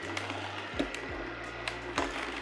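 Masticating slow juicer switched on: its motor runs with a steady low hum and a faint high whine as the slow auger turns, with a couple of sharp clicks as it crushes whole limes.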